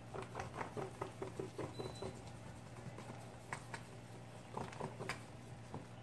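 Wooden paint stirrer mixing thin, watery grout in a plastic tub: a quick run of wet stirring strokes in the first two seconds, then a few separate scrapes and knocks of the stick against the tub.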